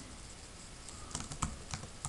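A handful of quiet keystrokes on a computer keyboard, starting about a second in, as code is typed.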